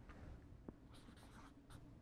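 Faint strokes of a marker writing on a board, a few short scratches, mostly in the second half.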